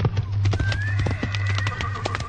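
Horse sound effect: hooves galloping in a quick clip-clop, with a long whinny rising in over it about half a second in and held to the end. A low steady hum lies beneath.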